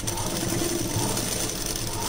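Domestic sewing machine running at a steady speed, stitching through layered cloth, its mechanism rattling rapidly; it starts up abruptly right at the beginning.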